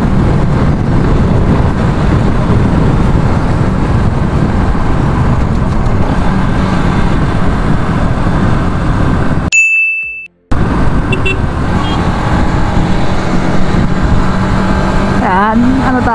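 Motorcycle riding at speed: steady engine drone mixed with wind and road noise on the bike-mounted microphone. About two-thirds of the way through, a short high tone sounds and the audio drops out for about a second before the riding noise returns.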